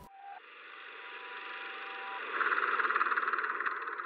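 Rattling, whirring noise that swells to its loudest about two and a half seconds in and then eases off, as a push-bar hallway door swings closed.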